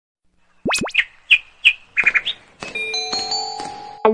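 Channel-intro sound effects: two very fast rising whistle sweeps, then a few short bird chirps and a quick trill, ending in a cluster of chime notes that ring on.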